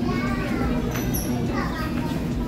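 Fast-food restaurant dining-room ambience: a steady low hum under background chatter, with a child's high voice calling out twice and a brief high ping about a second in.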